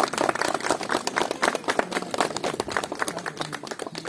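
A small group of people clapping: dense, uneven hand claps that thin out at the end.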